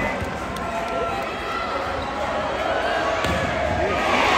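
A volleyball struck during a rally, with a thump near the start and another about three seconds in, over steady crowd chatter and calls.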